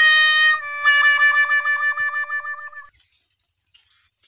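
Comedy 'sad trombone' sound effect: a short falling note, then a long wobbling low note that cuts off just before three seconds in.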